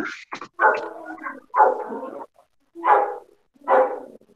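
A dog barking about once a second, four barks in a row, heard over a video call.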